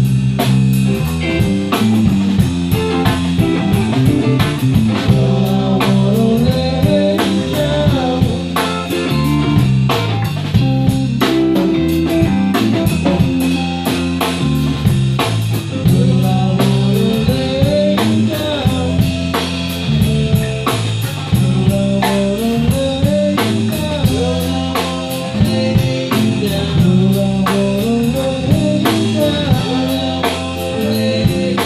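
Live band playing an instrumental break with no vocals: a guitar lead with bending, sliding notes over a drum kit keeping a steady beat.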